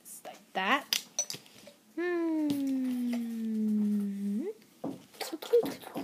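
A voice holding one long vowel for about two and a half seconds, starting about two seconds in, sliding slowly down in pitch and turning up at the end. Light clicks of a small plastic toy and its clear plastic box being handled, mostly near the end.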